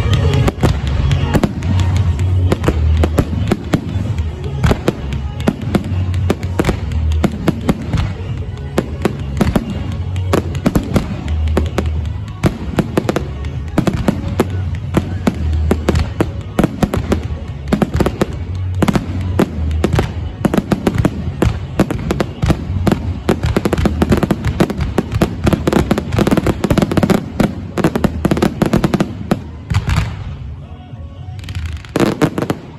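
Fireworks display in a dense barrage: many launches and shell bursts going off in quick succession, bangs and crackles overlapping without a break.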